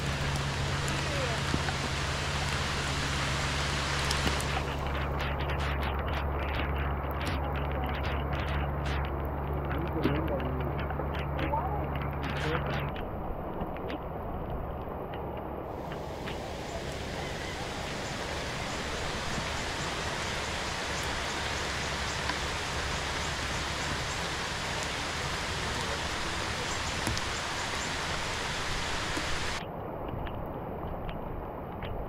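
Steady rain and surf making an even hiss, with a low steady hum underneath that stops about 13 seconds in.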